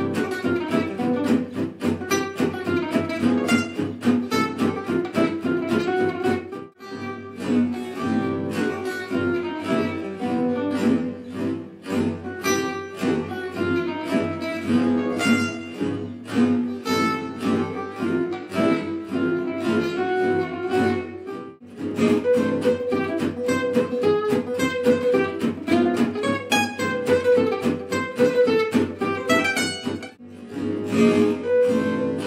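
Gypsy jazz played on Selmer-style acoustic guitars: a lead guitar solo phrase built on a short repeated motif over a rhythm guitar's accompaniment, with short breaks about 7 seconds and 22 seconds in. Part of the passage is replayed slowed down.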